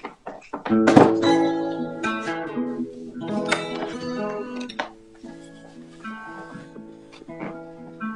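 Guitar strummed through the opening chords of a song, heard over a video call. The loudest strum comes about a second in, and quieter chords ring out in the second half.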